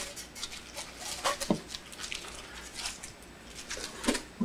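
Blue painter's tape being peeled off a wooden box, giving a run of light, irregular crackles and ticks with a couple of brief squeaks a little over a second in.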